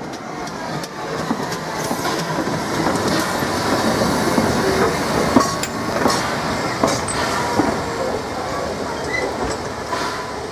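Baldwin 4-6-2 steam locomotive passing close by at low speed. The running noise of the engine and its wheels on the rails builds up over the first few seconds, with a few sharp clicks near the middle.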